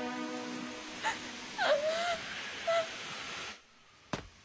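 A girl sobbing in a few short, wavering cries over the steady hiss of rain, while background music fades out. The sound drops away shortly before the end.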